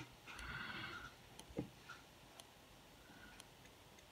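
Faint, even ticking about once a second over near-silent room tone, with a short faint noise that ends about a second in.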